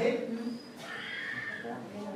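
A performer's voice on stage: speech at the start, then a high, drawn-out cry lasting about a second.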